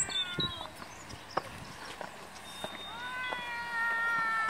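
A young child's high-pitched voice: a short falling call right at the start, then a long held call from about three seconds in, with a few footsteps on a paved path.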